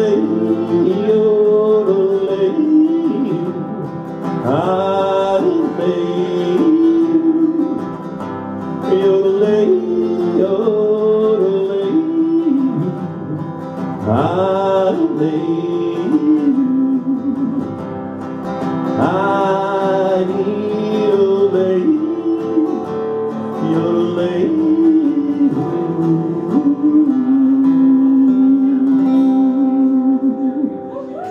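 Solo acoustic guitar strummed under a man's wordless vocal melody, the closing instrumental part of a country song, ending on a long held note near the end.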